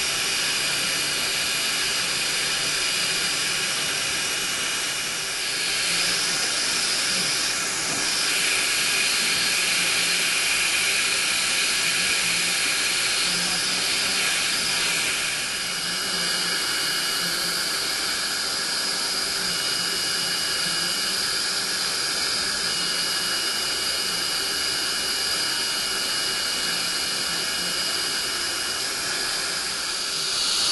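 Steady rushing hiss of dental suction drawing off the plume while a diode laser cuts gum tissue, with a thin high steady tone that comes and goes.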